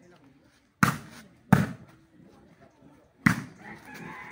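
A volleyball being struck by players' hands during a rally: three sharp slaps, one about a second in, another half a second later, and a third near the end.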